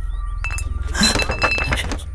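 A sharp clink about half a second in, then a cluster of glassy clinking and chime-like ringing about a second in that dies away before the end, over a steady low drone.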